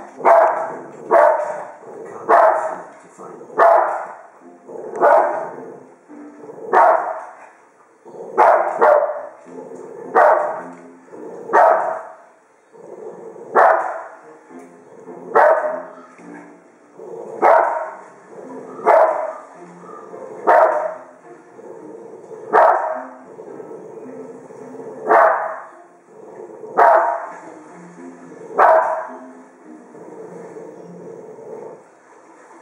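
A Cavalier King Charles Spaniel barking at grizzly bears on the TV, single barks repeated steadily about every one to two seconds.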